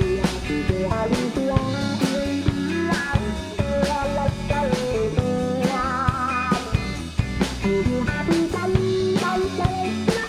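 Live rock band playing an instrumental passage: an electric guitar plays a lead line with bent notes and a wavering held note about six seconds in, over bass and a drum kit.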